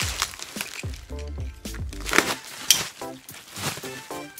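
Background music with a bass line and short pitched notes. Over it, plastic bubble wrap crinkles and crackles in sharp bursts as it is pulled away by hand.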